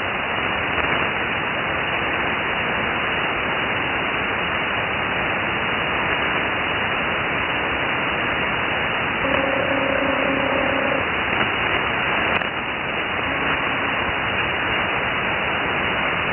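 Steady hiss of band noise from a ham radio receiver tuned to 3.916 MHz on the 75-metre band: the frequency is open, and no station answers the call for check-ins. A faint steady two-note tone sits in the hiss for about two seconds past the middle, and a short click comes about three quarters of the way through.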